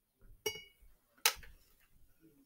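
Two sharp clicks of small hard objects knocking together. The first carries a brief ringing clink, and the second, about a second in, is louder.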